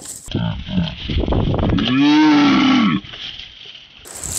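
A long, drawn-out moo-like call, rising and then falling in pitch for about a second, comes about two seconds in after a few shorter voiced sounds. The sound is dull, with its top end cut off.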